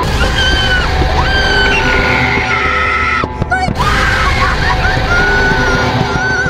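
A woman screaming in fright, a string of long high-pitched screams over a steady low rumble, with a short break about halfway through.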